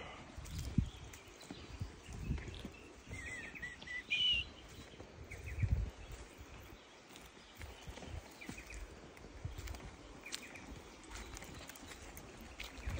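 Footsteps on dry, flaking mud and leaf litter, a step every second or two. A bird calls briefly about three to four seconds in, with a few fainter chirps later.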